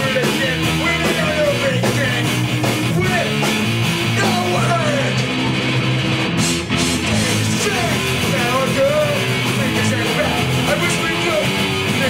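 A rock band playing a song: electric guitar and drums under a sung vocal line, with a brief break about six and a half seconds in.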